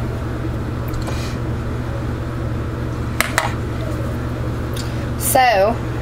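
A steady low hum with a few light taps and clicks from a silicone spatula and plastic containers being handled, two of them close together about three seconds in.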